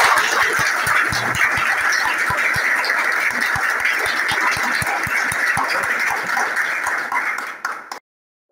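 Group applause: many people clapping hands together in a dense patter, dying away just before the end.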